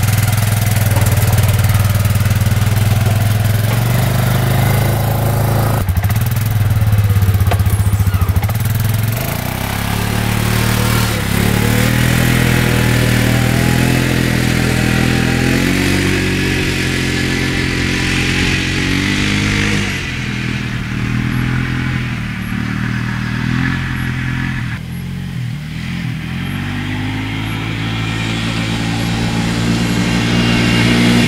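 Suzuki Eiger 400 4x4 ATV's single-cylinder four-stroke engine running as the quad is ridden off: it revs up in repeated rising pulls through the gears. It grows fainter past the middle and louder again near the end.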